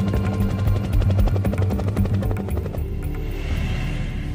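Helicopter rotor blades chopping in a rapid, even beat over a steady, low soundtrack music bed. The chop thins out near the end.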